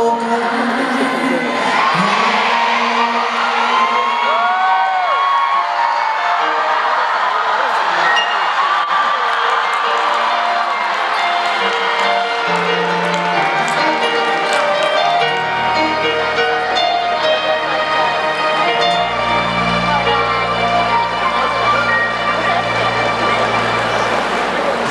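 Live band playing on after a ballad, keyboards holding long notes over a crowd cheering and screaming, with sharp whoops early on. Deep sustained bass notes come in about halfway and drop lower near the end.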